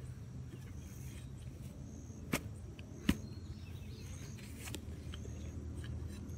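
A serrated Root Slayer shovel digging into root-filled soil, with two sharp chops a little under a second apart, about two and three seconds in, over steady low background noise.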